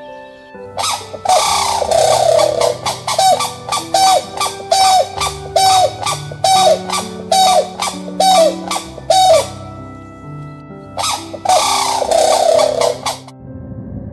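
A bird calling loudly over soft background music: one long call, then about ten short calls roughly half a second apart, and another long call near the end.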